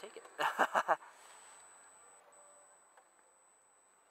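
A few words of speech, then a faint hiss of wind and tyre noise that fades away as the motorcycle slows to a stop in a parking spot. A faint steady high-pitched whine runs underneath.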